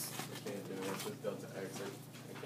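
Faint, low voices murmuring, too quiet to make out words, over a steady low room hum.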